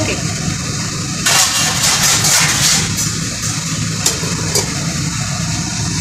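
A steady low mechanical hum from the kitchen, with a burst of hissing noise from about one to three seconds in and a couple of light clicks later, as a metal lid goes on a pan of rice on the stove.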